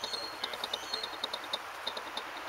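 Small birds chirping in quick, irregular runs of short high notes over a steady background hiss.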